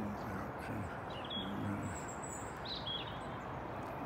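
Steady outdoor background noise with a few short, high bird chirps, about a second and a half, two seconds and three seconds in.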